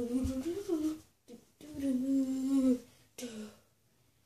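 A boy humming a tune to himself in three held phrases: one about a second long, a longer steady note in the middle, and a short one near the end.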